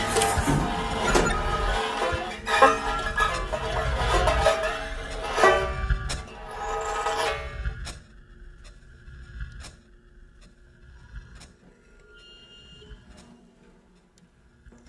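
Improvised music: a banjo laid flat, scraped and struck with two thin metal rods, making a dense metallic ringing texture together with electronics. About eight seconds in it drops away suddenly to sparse clicks and a few faint short tones.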